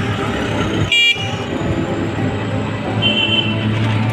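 Street traffic with a short, high vehicle horn toot about a second in, and a fainter horn beep about three seconds in.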